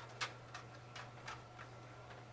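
A handful of light, sharp ticks and taps at uneven spacing, about six in two seconds, over a steady low hum.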